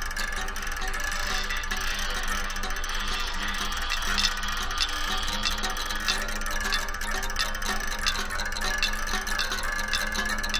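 Experimental chamber music: a steady high tone and a low drone are held throughout, with scattered plucked and ticking string sounds over them. The high tone dips slightly near the end.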